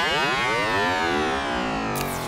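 Synthesized sweeping transition effect: a dense cluster of pitched tones gliding in pitch together, like a siren, steady in level and cutting off suddenly at the end.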